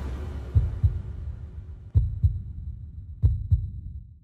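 Heartbeat sound effect in a logo sting: three double thumps, lub-dub, about 1.3 s apart over a low drone that fades out near the end.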